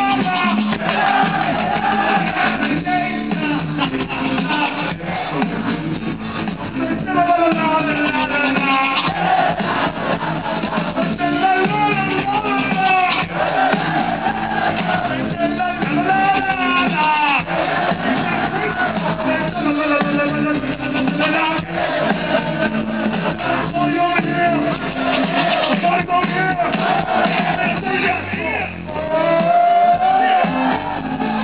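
Live hip-hop performance: vocalists on microphones over a live band with drums, loud and continuous.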